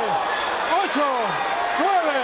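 Boxing referee shouting a Spanish knockdown count over a fallen fighter, three loud calls about a second apart, with arena crowd noise beneath.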